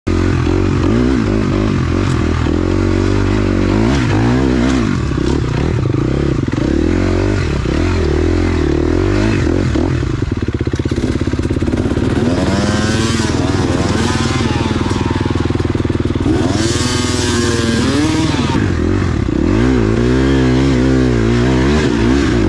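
Dirt bike engine running at low speed on a technical trail, its revs swelling and dropping repeatedly as the throttle is worked. Two longer rev rises come past the middle.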